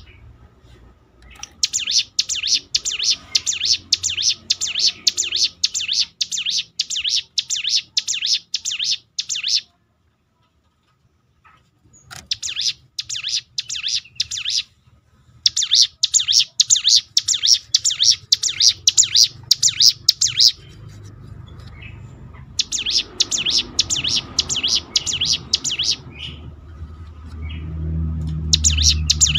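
A caged hill prinia (ciblek gunung) singing its 'ngebren' song: long runs of rapid, sharp, high repeated notes lasting several seconds each, broken by short pauses. A low hum rises under the later runs.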